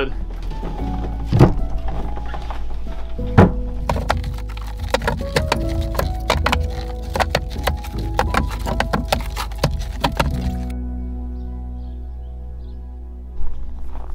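Split firewood knocking as pieces are tossed into a wooden bin, a quick run of wooden knocks with two especially sharp ones early on, stopping about ten seconds in. Background music runs throughout and is left alone after the knocking ends.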